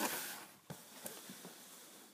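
Faint handling noise: a soft rush that fades over the first half second, then a few faint clicks, as the handheld camera is moved along the piano action model.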